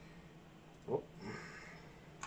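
Quiet room tone with a man's short 'whoop' about a second in, followed by a faint soft hiss.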